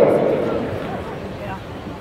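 A public-address announcer's voice dies away in the echo of a large gymnasium, leaving a low murmur from a seated crowd.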